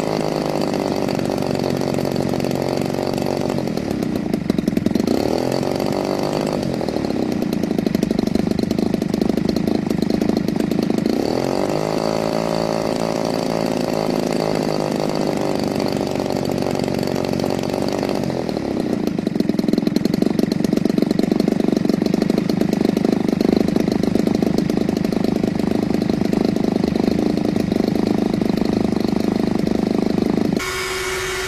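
Fifty-cc two-stroke petrol engine of a large radio-control model warplane being run up on the ground. Its revs dip and climb back twice, then stay higher and a little louder for the last third.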